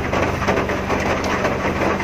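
Mitsubishi Mirage's three-cylinder engine running steadily, heard from inside the car's cabin as a low hum.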